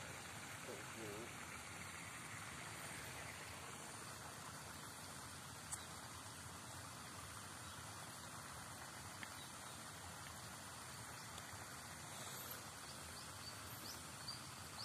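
Faint, steady outdoor background noise in an open field, with a brief faint voice about a second in and a single small click near the middle.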